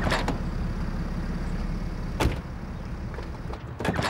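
Car running with a low steady rumble, heard from inside the cabin, with a sharp click about two seconds in and another near the end.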